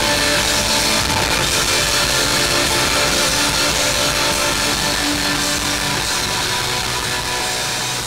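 Live rock band playing an instrumental passage, loud and dense, with electric guitar to the fore over bass and drums.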